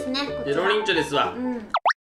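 Talking over light background music, then near the end a quick cartoon-style sound effect that sweeps down and back up in pitch.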